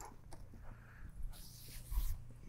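Faint, dull thuds of a horse's hooves on sand arena footing over a low steady hum, with a slightly louder thud near the end.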